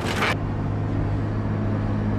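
A brief crunch of metal in the first moment as the grapple bites into the car body, then the grapple excavator's engine running with a steady, even drone.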